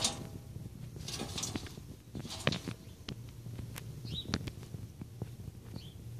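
Rat caught in a wire-mesh live trap, moving about inside it: scattered light clicks and knocks against the cage, with a short high squeak a little past the middle and another near the end.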